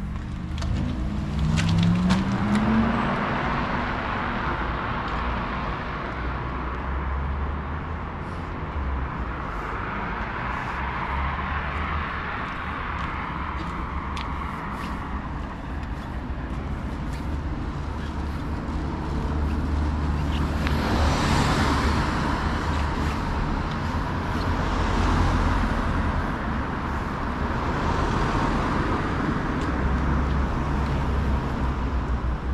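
Street traffic going by close at hand: cars pass one after another, their tyre noise swelling and fading several times over a steady low rumble. A rising engine tone comes as a car pulls away in the first few seconds.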